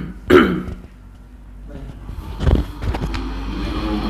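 A man's loud guttural grunts, two short ones right at the start falling in pitch, like a cough or belch. Then rustling and a couple of dull thumps as bodies shift on a floor mat.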